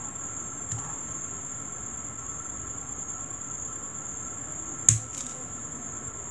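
Decorative-edge craft scissors cutting cardstock: a soft click about a second in, then one sharp snip near the end as the blades close through the paper. A steady high-pitched whine runs underneath.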